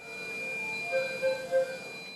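Steady high electronic tones over faint hiss, with a few short, soft bell-like notes in the middle.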